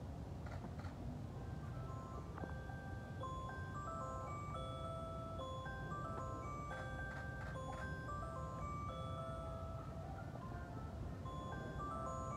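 Faint, slow instrumental melody of single held notes, stepping up and down, over a steady low hum of a large hall.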